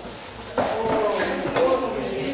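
A sudden thump about half a second in, as a fighter is thrown down onto the training mats during kudo sparring. Indistinct voices from people in the hall follow it.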